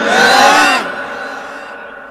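A man's voice through a microphone and loudspeakers, the drawn-out end of a melodic phrase, stopping under a second in and leaving a long echo that fades slowly away.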